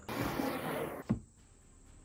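Cedar window sash with an acrylic panel sliding along its plain track, which has no groove, giving a rushing scrape for about a second that thins out. It ends in one sharp knock as the sash stops.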